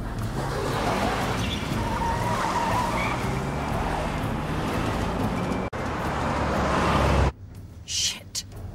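A taxi car accelerating hard: the engine revs with skidding tyres. It cuts off abruptly about seven seconds in to a much quieter car interior.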